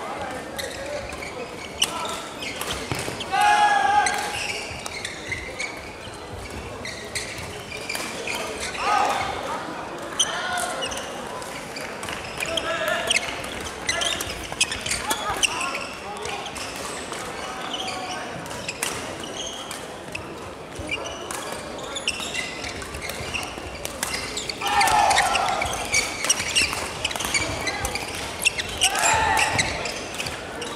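Badminton rackets striking shuttlecocks in a large sports hall: sharp, frequent hits from the rally and from neighbouring courts. Players' voices and short shouts rise above them a few times.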